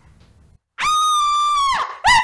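A person's high-pitched scream, held at one steady pitch for about a second, starting just under a second in after a moment of quiet.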